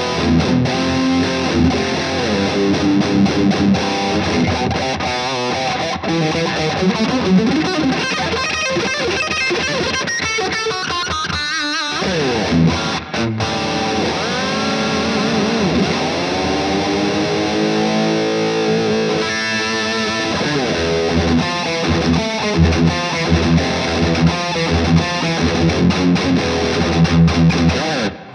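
Electric guitar with two humbucker pickups played through a Marshall amp's high-gain channel: heavily distorted metal riffing and lead lines, with bent, wavering notes around the middle.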